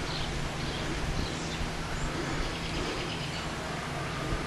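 Steady outdoor background noise: an even hiss with a faint low hum beneath it, and no distinct events.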